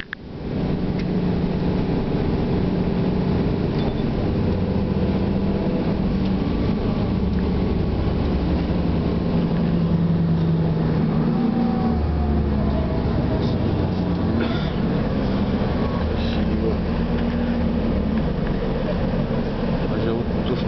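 Steady engine drone and road noise heard from inside a moving road vehicle, the low engine hum shifting in pitch now and then as it drives along.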